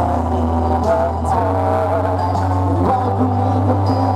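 Live band music over a concert PA, a male singer's held notes over a steady bass line.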